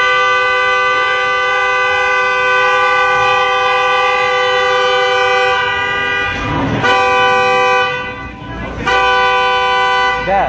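Car horn held down in one long honk of about six seconds, then two shorter honks of about a second each near the end.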